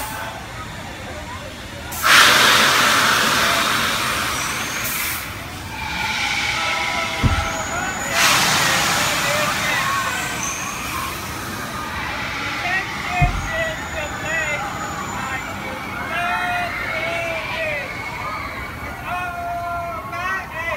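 Drop tower ride in action: a sudden loud rush of hissing air about two seconds in and another about six seconds later, with many riders screaming and yelling over it, their cries rising and falling and overlapping.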